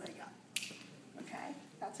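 A single sharp click about half a second in, short and bright.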